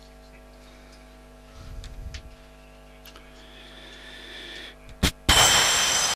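Steady electrical hum on the audio feed, with a faint muffled rumble about two seconds in. Near the end a sharp click is followed by a loud burst of static noise as the recording is stopped.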